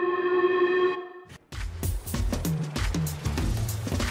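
Background music: a held chord that breaks off just over a second in, then a beat with deep bass and drum hits.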